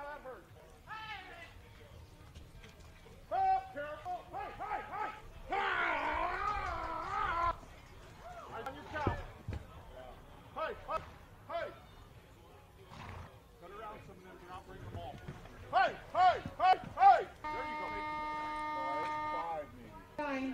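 Shouts and calls during a ranch-sorting run, with a loud, wavering call about six seconds in and a burst of loud short calls near the end. Then an arena timer horn sounds one steady tone for about two seconds, marking the end of the run.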